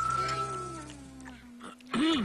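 A cartoon character's long, low vocal sound sliding slowly down in pitch, over a music bed with a held high note in the first half.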